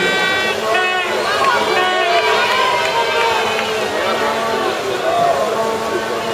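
Spectators shouting and cheering over one another, many voices at once with no break, urging swimmers on during a race.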